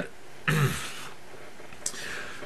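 A man clearing his throat once, briefly, with a faint click near the end.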